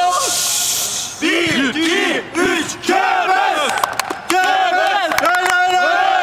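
A group of men chanting and shouting together in celebration. There is a burst of noise in the first second, then a run of short rhythmic chanted calls, then a longer held, wavering cry from a little past the middle.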